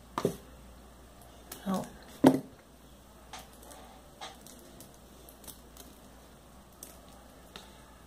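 Faint, scattered light clicks and small handling noises from glass crystal beads on a beaded flip-flop strap as it is sewn with needle and nylon thread, with a single short spoken word near the start.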